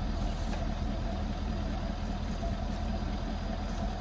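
Ford F-350 pickup truck idling steadily, a low even engine hum.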